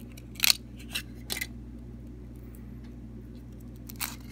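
Aluminium foil wrapper crackling as it is peeled off a chocolate egg, a few sharp crinkles in the first second and a half, then only faint handling, with a steady low hum underneath.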